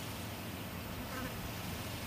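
Faint, steady low buzzing ambience.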